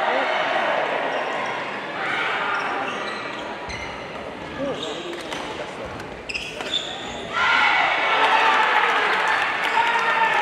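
Badminton rally in a large gymnasium: sharp racket strikes on the shuttlecock and shoes squeaking on the court floor, over voices from around the hall. About seven seconds in, loud shouting and cheering break out as the point ends.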